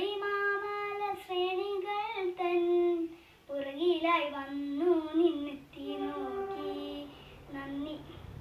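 A young girl singing solo, unaccompanied, in long held notes that bend in pitch, with a short pause for breath about three seconds in.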